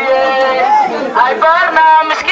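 Speech: a woman talking loudly through a handheld megaphone.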